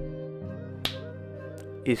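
Soft, sustained background music fading down, broken by one sharp finger snap about a second in; a man starts speaking right at the end.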